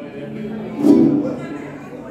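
Mariachi guitar loosely strummed and plucked between songs, with one louder strum about a second in, over voices in the room.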